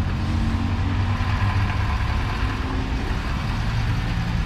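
Ford F-450's 6.7-litre Power Stroke diesel V8 idling steadily, a constant low hum with a steady hiss above it.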